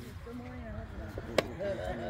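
Background voices of people talking, with a single sharp knock a little past halfway through.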